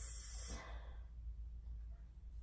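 A soft breath out close to the microphone in the first half-second, then quiet room tone with a low steady hum.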